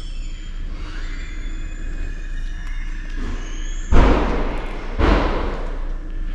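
Indoor room tone with faint background music, broken about four seconds in by two short, loud bursts of rustling noise a second apart: handling noise on the microphone as the handheld camera is swung.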